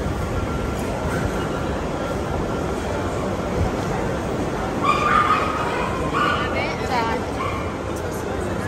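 Busy food court background chatter and noise, with a run of short, high-pitched yelping or whining cries about five to seven seconds in.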